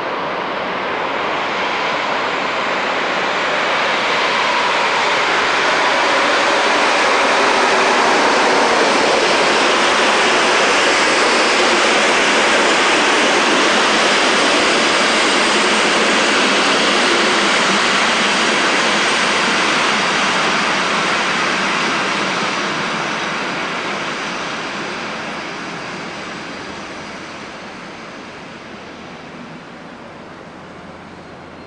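A locomotive-hauled passenger train passing through a station: a steady rushing and rumbling of wheels on rails. It swells over the first few seconds, holds loud through the middle, and fades as the train draws away.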